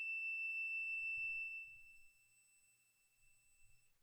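Digital multimeter's continuity beeper sounding one steady high-pitched beep while its probes touch the spindle body, the sign of a low-resistance path. The beep drops sharply in level about two seconds in and lingers faintly until near the end.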